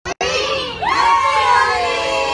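A group of young children shouting and cheering together, many voices overlapping in one loud, excited outcry that starts suddenly.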